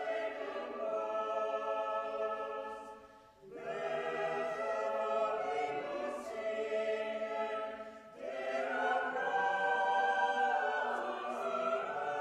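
Mixed church choir singing a carol in long held phrases, with short breaks about three and a half and eight seconds in. The voices ring in a reverberant stone church.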